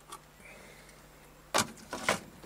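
Quiet workshop background with a small click near the start and one sharp clack about one and a half seconds in, from things being handled on the stopped metal-turning lathe.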